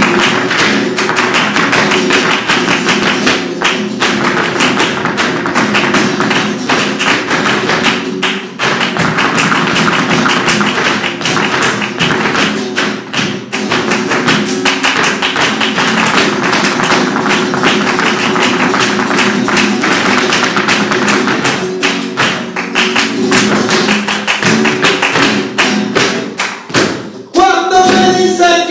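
Live flamenco: a flamenco guitar playing, driven by hand clapping and the dancer's rapid heel footwork striking the stage floor in a dense, continuous rhythm. Near the end the percussion drops out briefly before the music resumes.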